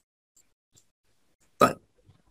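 Near silence with a few very faint ticks, then one short spoken word near the end.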